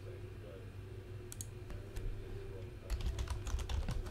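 Computer keyboard typing: a few scattered key clicks, then a quick run of keystrokes in the last second, over a steady low hum.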